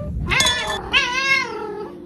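Domestic cat meowing in complaint: a short meow, then a longer one with a wavering pitch.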